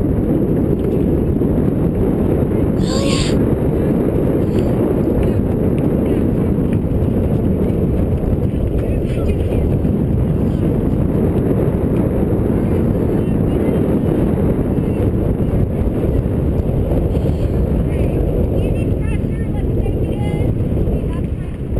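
Wind buffeting the microphone: a steady, loud, rough low rumble. A brief distant call rises above it about three seconds in, and faint voices come through near the end.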